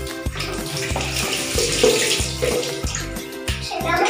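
Water poured from a plastic dipper splashing over a wet long-haired cat, heard under background music with a steady bass beat.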